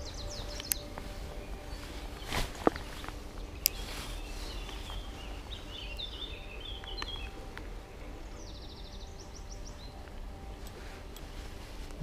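Small birds chirping over a steady outdoor background, with a quick rapid trill a little past the middle. A few sharp clicks in the first few seconds come from the spinning rod and reel being handled.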